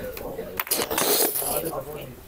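Clinking and rattling handling noises from a man pulling out an office chair and setting things down on a conference table, loudest about a second in, with some low talk in the room.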